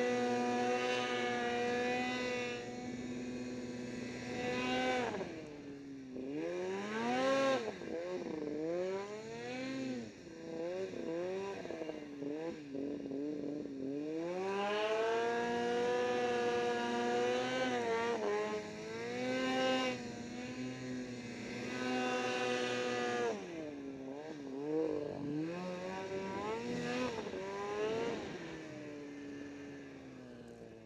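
Ski-Doo snowmobile engine pulling through deep snow under changing throttle. The revs hold steady for the first few seconds, then drop and come back in a string of quick blips. They climb and hold high again through the middle, then ease off with more short blips and fall away near the end.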